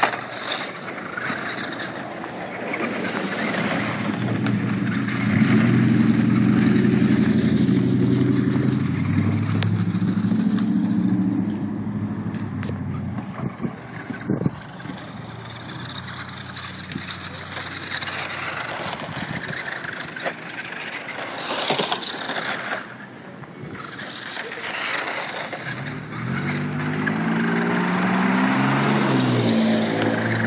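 Electric Traxxas 1/16 Slash 4x4 RC truck driving over gravel, its motor giving a pitched whine that rises and falls with the throttle for several seconds in the first half and again near the end, over steady crunching noise from the tyres and ground.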